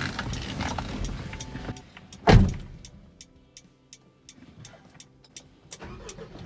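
Rustling as someone climbs into a Mitsubishi Triton pickup's cab, then one loud thump of the door being shut about two seconds in. Faint irregular clicking follows while the engine is off.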